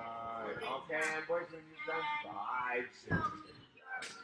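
Indistinct voices talking in the background, the first sound drawn out, with a short thump about three seconds in.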